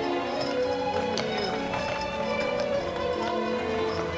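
Cheerful music playing steadily, with a horse's hooves clip-clopping as it pulls a carriage past.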